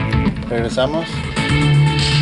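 Music from a Sony CDP-C315 CD changer, broken into short choppy fragments while the player searches backwards through the track, then playing normally again about one and a half seconds in, with a steady bass line.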